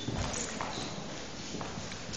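Footsteps of hard-soled shoes on a hardwood floor, a few separate heel strikes over a steady background hubbub.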